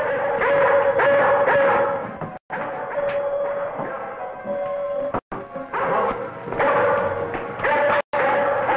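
Dramatic orchestral film score with held string-like notes, over which a dog barks in agitation. The sound drops out suddenly to silence three times, at splices in the old soundtrack.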